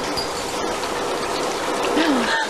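A shower running: water spraying steadily from the showerhead and splashing in the stall.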